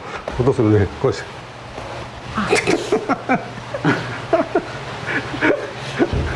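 Repeated sharp strikes and kicks landing on a karate student's body as he holds Sanchin kata under testing, with his short grunts and forced breaths between the blows.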